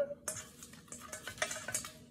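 A miniature spoon stirring paper entry slips in a stainless steel mixing bowl: light, irregular clinks and scrapes of metal on metal.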